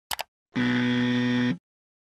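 Two quick clicks, then a buzzer sound effect held for about a second and cut off abruptly, like an error or rejection buzz.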